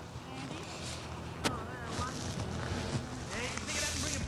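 Faint voices over a low outdoor background, with one sharp click about a second and a half in and a short hiss near the end.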